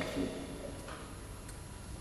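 A woman's voice finishing a spoken word of recited Romanian poetry, then quiet hall ambience with two faint clicks.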